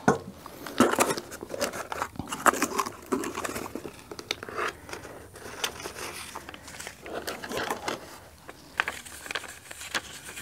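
Small cardboard box being opened by hand, its flaps and the paper inside handled and rustled, in a string of irregular short crinkles and scrapes.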